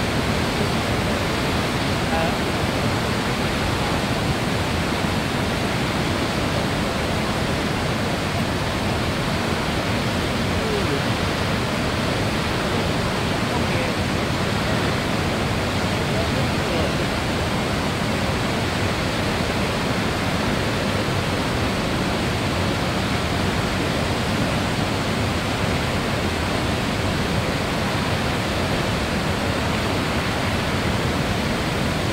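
Cumberland Falls, a wide river waterfall, pouring over its ledge: a steady, even rush of falling water that does not change.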